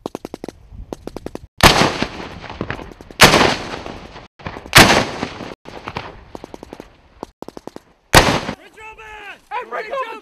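Bursts of rapid automatic gunfire broken by four loud explosions, each rolling away over about a second. Near the end, men shouting.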